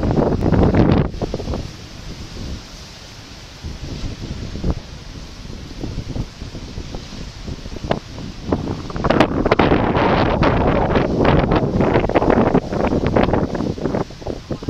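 Strong wind buffeting the microphone over rough ocean surf breaking on a rocky shore. Heavy gusts come in the first second or so and again from about nine seconds until near the end.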